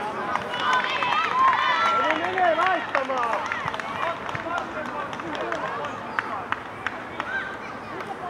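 Young footballers' voices shouting and calling across the pitch during play, many high-pitched calls overlapping at first and thinning out later, with a few sharp knocks near the end.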